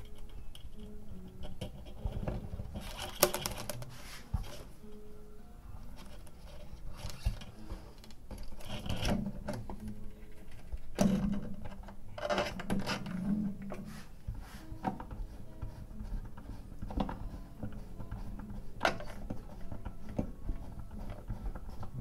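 Handling noise of a nylon classical-guitar string being hooked on after its knot is tied at the bridge: irregular rubbing, clicks and light knocks on the guitar, with a few short faint tones.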